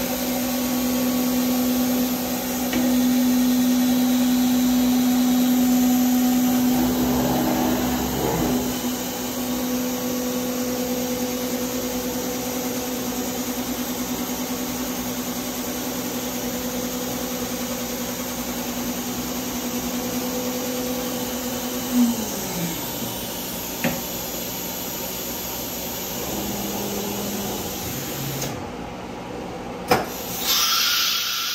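CNC router running, its spindle giving a steady motor tone over a constant rush of machine noise. Around the eighth second a short rising-and-falling sweep is heard, and about 22 seconds in the spindle's tone drops in pitch as it winds down.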